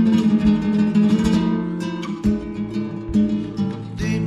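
Classical guitar playing an instrumental vidalita accompaniment, strummed and plucked chords in a steady rhythm.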